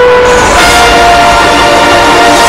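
News bulletin theme music: loud, held synthesized chords. About half a second in, the chord changes and a swelling whoosh of noise rises under it.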